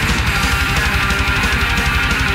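Power metal band playing: distorted electric guitars over a fast, even drum beat pulsing in the low end, loud and steady throughout.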